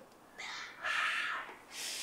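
Three short breathy sounds from a person, with no voice in them; the last is a higher hiss, starting near the end.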